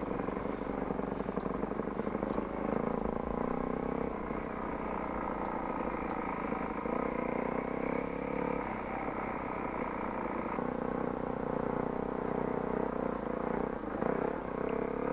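Enduro motorcycle engine running under load on a gravel trail, its pitch stepping up and down several times as the rider works the throttle and gears.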